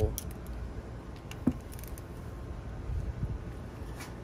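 Small metal clicks and taps of a torque wrench working a bolt on a transmission valve body, with one sharper click about a second and a half in.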